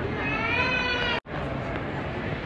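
A single high-pitched, drawn-out cry that rises and then falls in pitch, heard over the steady chatter of a crowd. It cuts off abruptly about a second in.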